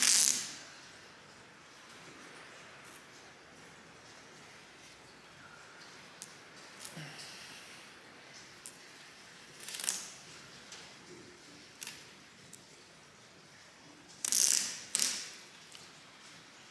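Masking tape being pulled off the roll in short ripping pulls: one at the start, one about ten seconds in, and two in quick succession near the end.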